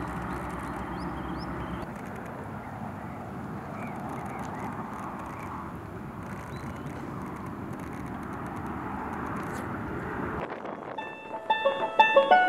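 Steady outdoor background noise at a spring pond with a few faint, short high bird chirps. About eleven seconds in it cuts to banjo-and-piano music.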